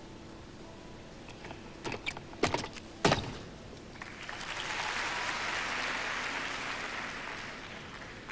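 A few sharp thumps of a gymnast's feet landing on a balance beam, the last, about three seconds in, the loudest, followed by audience applause that swells and then fades over the next three seconds.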